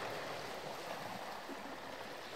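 Faint, steady seaside ambience: a soft, even wash of gentle surf on a sandy beach.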